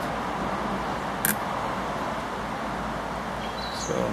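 Steady outdoor background noise, with one short click a little over a second in.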